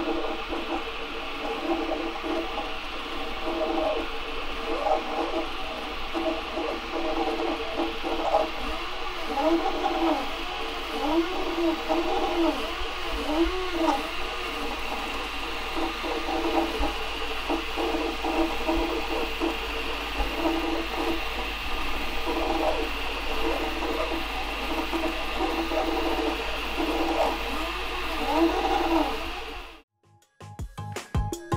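Prusa i3 Mk2 3D printer printing: its stepper motors whine in several tones that sweep up and down over and over as the print head moves, over the steady hiss of its cooling fans.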